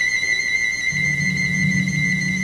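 Piccolo holding one long high note. Low sustained notes from the orchestra come in beneath it about a second in.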